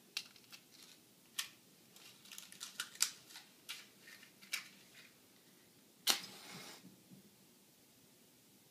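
Small clicks and scrapes of matches being handled, then a wooden match struck about six seconds in, catching with a sharp scratch and a brief hissing flare.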